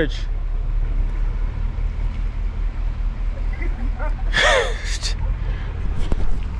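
Pickup truck running and rolling slowly, heard as a steady low rumble. About four seconds in, a person gives a short cry whose pitch falls.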